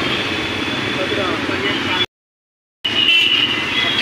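Steady traffic and road noise heard while riding along a rain-soaked street, with faint voices in the background. The sound cuts out completely for under a second midway, then the steady noise returns.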